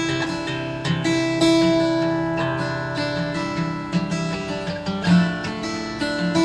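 Acoustic guitar strummed slowly, a handful of strokes with each chord left to ring.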